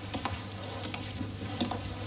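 Background noise of an old television recording: a steady crackly hiss over a low hum, with a few faint light ticks.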